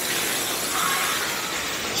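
A torrent of water from a splash-park tipping bucket pouring and splashing down in a steady rush that lasts about two seconds.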